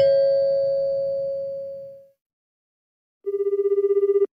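Lower second note of a two-note electronic ding-dong chime, ringing out and fading over about two seconds. After a short silence, a telephone starts ringing near the end: a rapid trilling ring.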